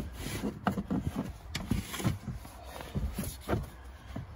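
Handling noise in a car boot: rustling, with several light knocks and clicks as a plastic crate and its contents are moved about.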